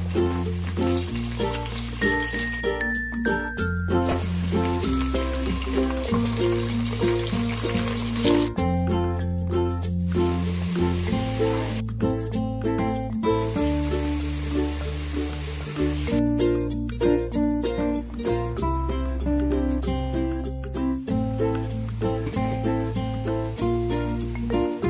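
Background music: a melody of short notes over a bass line that steps between held notes every second or two.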